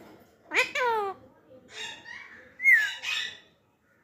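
Alexandrine parakeet squawking while held in the hand: a quick run of falling notes about half a second in, then harsh screeches, the loudest about three seconds in.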